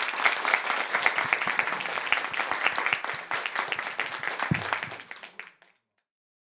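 Audience applauding: many hands clapping steadily, then dying away and stopping shortly before the end.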